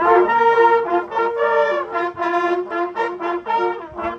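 A group of hunting horns playing together in unison: a brassy fanfare of short and held notes that move between several pitches.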